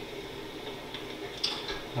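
Low steady background hiss in a pause between words, with one faint short click about one and a half seconds in.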